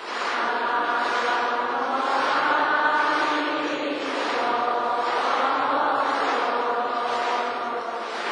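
A large congregation chanting together in unison, a sustained Buddhist chant of many voices that comes in just after the start.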